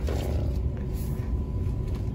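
Low, steady rumble of shop background noise with a faint steady hum, and a few light clicks as a plastic bottle is handled.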